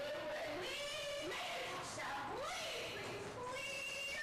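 A person's voice whose pitch slides up and down in swoops, with sharp rising glides about a second in and again a little after two seconds in.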